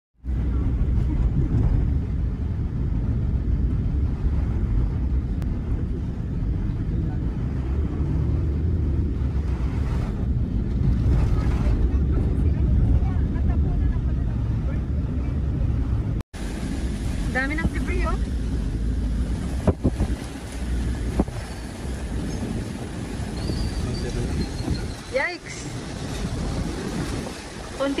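Typhoon-force wind buffeting the microphone, a heavy, steady low rumble, for about sixteen seconds. It cuts off abruptly, then a lighter rumble continues with a few short bursts of voices.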